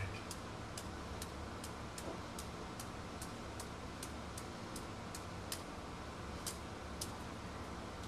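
Faint, regular ticking about twice a second over a steady low hum.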